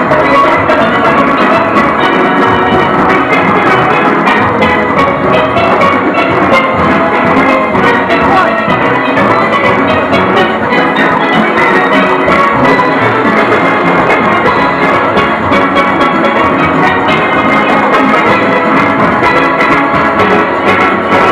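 A full steel orchestra playing live: many steelpans carry the tune over a driving rhythm section of drums and percussion, loud and continuous.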